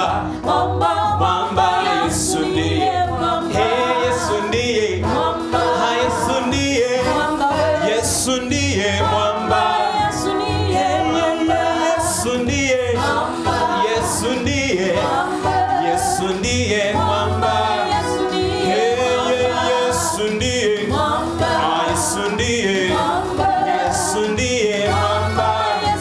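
Gospel song sung by a male lead voice with two female backing voices, accompanied on electronic keyboard, with a pulsing bass and a steady beat.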